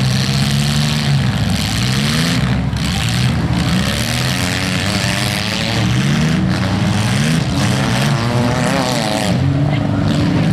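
Several demolition derby car engines revving at once, their pitches rising and falling and overlapping over a steady loud roar.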